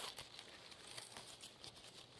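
Near silence, with faint scattered crackles of dry leaf litter on the forest floor.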